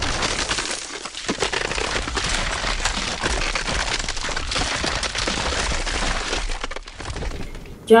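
Ice cracking and crunching with a low rumble underneath, a dense run of cracks and snaps at a steady level: pack ice closing in and grinding around a wooden ship. It stops just before the end.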